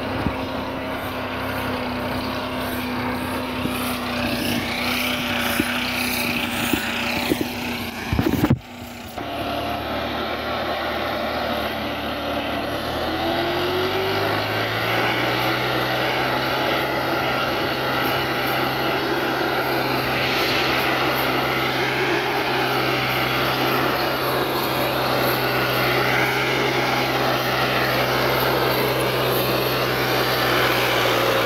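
Diesel tractor engine running steadily under load. It cuts off sharply about eight seconds in, then rises in pitch a few seconds later and holds there.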